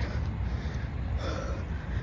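A runner's heavy breathing as she catches her breath just after a sprint interval, over a steady low rumble.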